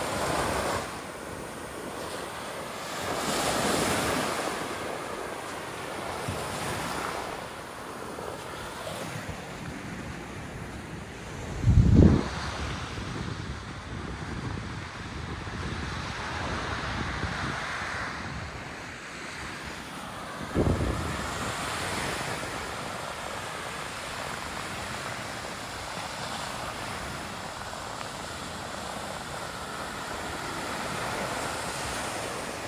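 Small surf breaking and washing up a sandy beach, swelling and fading every few seconds. Two brief, loud, low rumbles hit the microphone about twelve and twenty-one seconds in.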